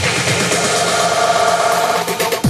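Tech house DJ mix in a breakdown: the kick drum and bass drop out, and a steady held tone sits over the upper percussion, with the tone coming in about half a second in.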